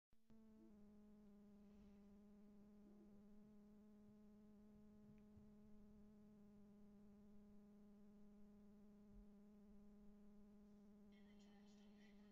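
Near silence with a faint, steady buzzing hum: one low tone with its overtones, unchanging throughout.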